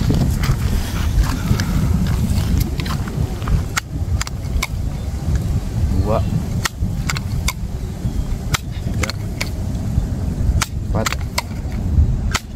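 A multi-pump air rifle being pumped up, its pump lever giving short sharp clicks every second or two while the strokes are counted aloud. A steady low rumble of wind on the microphone runs underneath.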